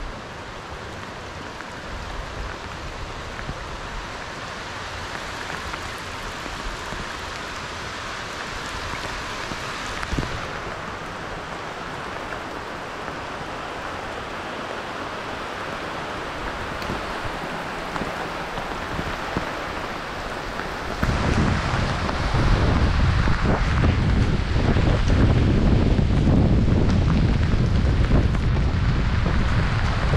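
Rain falling on the surface of a river, a steady hiss. About twenty seconds in, wind starts blowing across the microphone and the sound becomes much louder and lower until the end.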